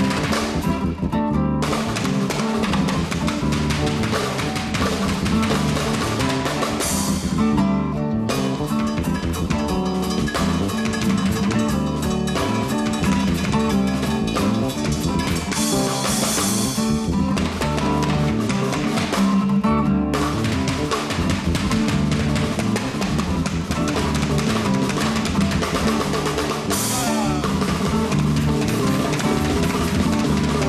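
A jazz fusion trio playing live, with the drum kit and cymbals to the fore over acoustic guitar and electric bass. The cymbal wash drops out briefly a few times.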